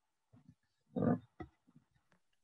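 A person's voice over a video call: a few short, clipped vocal noises, the loudest about a second in, not forming words.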